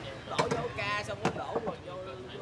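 Machete chopping a coconut: two sharp strikes about a second apart, with a voice between them.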